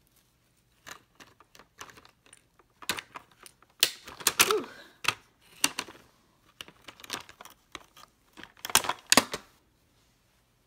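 Hands handling small plastic toy playset pieces and doll parts: scattered clicks, taps and rustles, with a louder clatter about four seconds in and again near the end.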